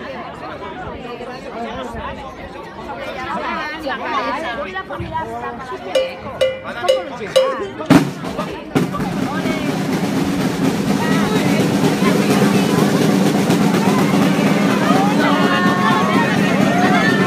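Crowd talking, with a few evenly spaced sharp strikes, then a loud hit about halfway through after which music with steady held low notes and a melody above starts and plays on, louder than the chatter.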